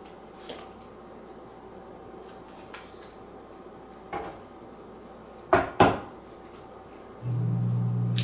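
Tarot cards being handled and laid down on a table: a few soft taps, then two louder knocks close together about five and a half seconds in. Near the end a low steady hum starts.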